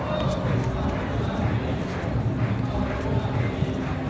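A voice rapidly repeating a short chant over the murmur of a crowd, typical of a kabaddi raider's continuous "kabaddi, kabaddi" cant during a raid.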